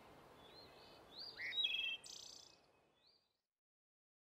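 Faint birds chirping, with short rising and falling calls and one brief trill, over a light hiss. The sound fades out about two and a half seconds in.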